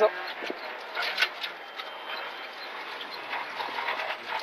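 Renault Clio Rally4 rally car heard from inside the cabin, with engine and road noise, as it slows for a very tight bend. There is a sharp knock about a second in, and the sound drops in level as the car comes off the throttle.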